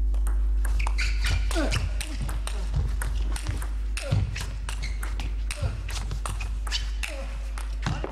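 Table tennis rally: the celluloid ball clicking sharply off the paddles and table in quick, irregular succession, mixed with short squeaks of the players' shoes on the court floor.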